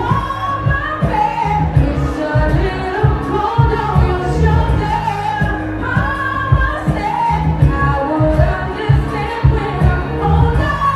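Live R&B performance: a female vocalist singing into a handheld microphone over a loud backing track with a heavy bass beat.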